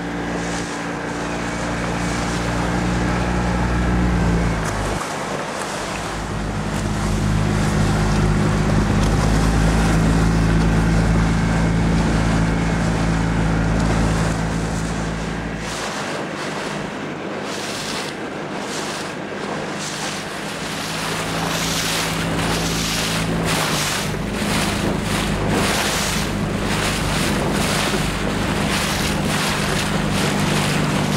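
A motorboat engine running steadily with a low drone whose note shifts a few times, under wind buffeting the microphone and the wash of waves; the wind gusts grow heavier in the second half.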